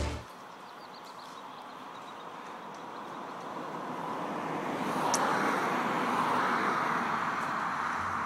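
Roller skis rolling on asphalt, a steady rushing noise that grows louder as the double-poling skiers come closer. A single sharp click of a ski pole tip striking the asphalt about five seconds in.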